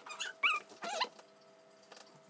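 Three short, high-pitched vocal squeaks within the first second, wavering in pitch, the second one loudest.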